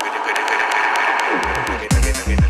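Electro DJ mix playing loud: the bass and kick drum drop out for a short breakdown, leaving ticking hi-hats and a swelling synth. The full low end slams back in just before the end.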